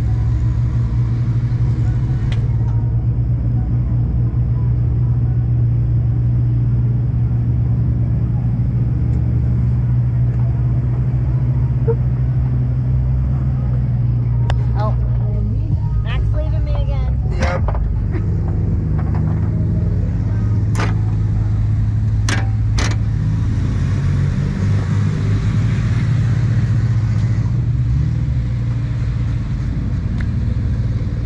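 A Jeep's engine running steadily at low crawling speed over slickrock, a constant low drone. A few sharp knocks and clicks come through in the middle stretch.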